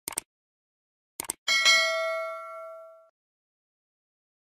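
Sound effect of a subscribe-button animation: two quick mouse clicks, two more about a second later, then a bright bell ding that rings out and fades over about a second and a half.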